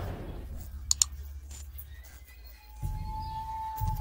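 Two quick mouse clicks, a double click sound effect for an on-screen Like button, over a low background hum. A steady high tone starts about two and a half seconds in.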